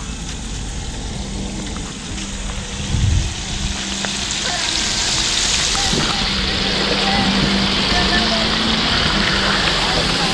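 Walleye chunks deep-frying in hot oil in the basket of an outdoor propane fish fryer: a steady sizzle that grows louder about four seconds in.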